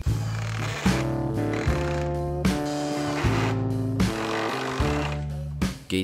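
Background music with a steady beat, sustained notes changing about every 0.8 seconds.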